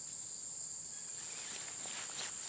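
Insects trilling in a high, steady, unbroken tone, the kind of chorus that crickets make.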